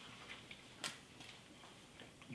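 Near silence: hall room tone, with one sharp click a little under a second in and a few fainter ticks around it.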